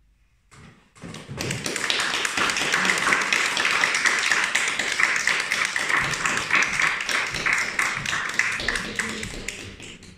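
Audience applauding: many hands clapping, starting about a second in and thinning out near the end.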